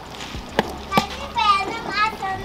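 Two sharp knocks about half a second and a second in, then a child's high-pitched voice calling out near the end.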